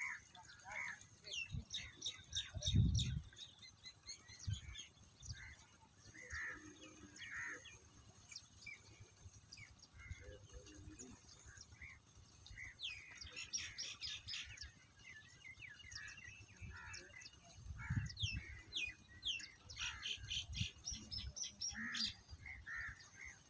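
Small birds chirping in many short, quick calls, thickest about two thirds of the way in and again near the end. Low rumbling thumps come underneath, the loudest a few seconds in and another late on.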